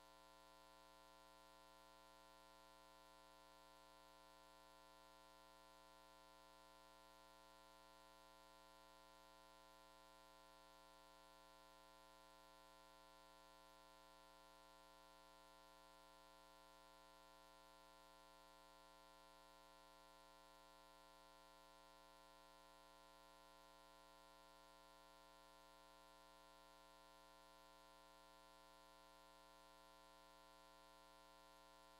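Near silence with a faint, steady hum that does not change.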